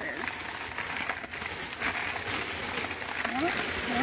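Crumpled packing paper crinkling and rustling in a steady run of crackles as a figurine is unwrapped by hand.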